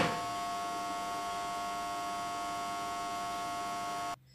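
Steady electronic hum with several steady high tones, coming through a live phone call.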